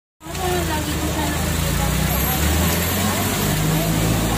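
Gas stove burner running under a can, a steady hiss and roar that cuts in abruptly just after the start, over a low rumble and faint voices.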